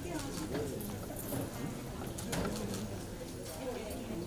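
Faint, indistinct voices of people talking away from the microphone, with a couple of light clicks.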